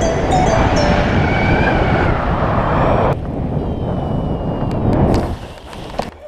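Wind buffeting the camera's microphone during a paraglider flight, a loud rumbling rush, with background music fading out over it. The rush thins about three seconds in and falls away after about five seconds.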